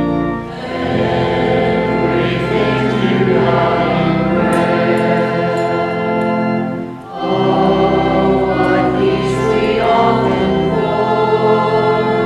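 Church hymn sung by many voices together with organ, in long sustained phrases, with brief breaks between lines about half a second in and about seven seconds in.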